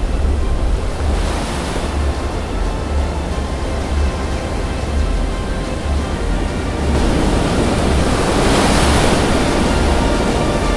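Ocean waves washing and surging, swelling about a second in and again, louder, from about seven seconds, over background music with a low pulsing bass.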